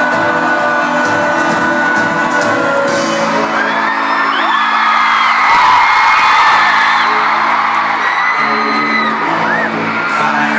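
Live pop band performance heard through a stadium sound system: sustained instruments with singing, under fans whooping and screaming close to the microphone, with high sliding squeals loudest around the middle.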